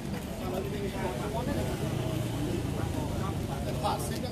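Several people talking in the background over a steady low rumble of street traffic.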